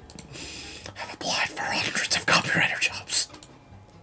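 A man's voice whispering and muttering under his breath, breathy and unvoiced, in several short spurts.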